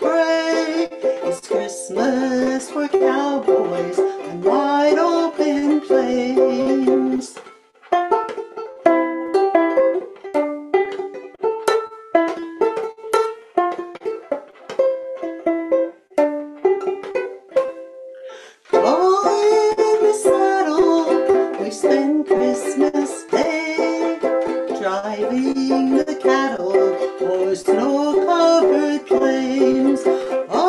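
Ukulele music: strummed ukulele under a sustained, gliding melody line. From about eight to nineteen seconds in it thins to single picked ukulele notes, then the fuller melody returns.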